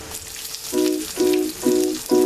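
Chopped onion tipped into hot oil in a wok, sizzling as it fries, with a mustard-seed and curry-leaf tempering already in the oil. Background music with short repeating notes comes in about a third of the way through.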